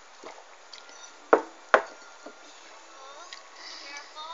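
Two sharp knocks about half a second apart, over faint voices.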